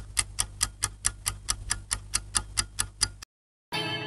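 A rapid, even ticking sound effect, about four or five ticks a second, over a low hum. It cuts off suddenly a little past three seconds in, and plucked-string music starts just before the end.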